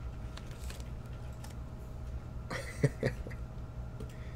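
A trading card and its clear plastic sleeve being handled over a steady low hum. A few short clicks and a soft thump come about two and a half to three seconds in.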